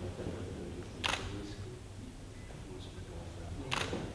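Two camera shutter clicks, about two and a half seconds apart, as a handshake is photographed.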